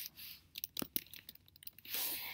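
Typing on a computer keyboard: a quick, uneven run of faint key clicks.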